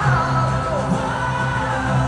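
K-pop pop song performed live, a male vocalist singing a held, gliding melody over the backing track through the arena's sound system, heard from the stands.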